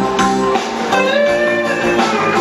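Live blues-rock band playing: electric guitar over strummed acoustic guitar, with one held note that bends in pitch about a second in.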